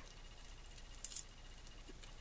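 Faint handling sounds of a thin metal tool poking into a dried, glue-stiffened cotton-string ball, with one brief crackle about a second in as the popped balloon skin pulls away from the string.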